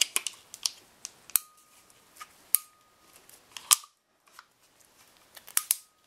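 Manual PEX press tool clicking and snapping as its handles are worked to press a Viega fitting onto PEX pipe: a string of sharp clicks at irregular intervals, the loudest about two and a half and three and a half seconds in, some followed by a faint brief ring.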